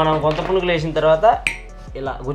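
Light metallic clinks of a tiny metal utensil against a miniature pan and small brass vessels, with one sharper clink about one and a half seconds in.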